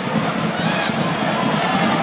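Open-air football stadium ambience: a steady rush of noise with voices shouting across the pitch.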